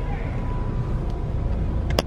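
Low, steady rumble of a car rolling slowly, heard from inside the cabin, with one sharp click just before the end.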